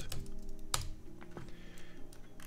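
A few computer keyboard keystrokes, sharp separate clicks, as a name is typed in, over quiet background music.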